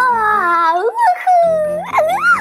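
High-pitched, squeaky cartoon-creature voice making a long wondering 'oooh' that slides slowly down in pitch, then a short rising-and-falling call near the end, over background music.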